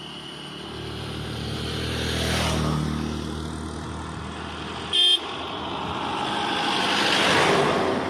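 Road vehicles passing close by, their engine sound swelling and fading twice, with a short horn toot about five seconds in.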